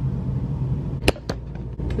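A steady low hum, with two sharp clicks about a second in, a fraction of a second apart.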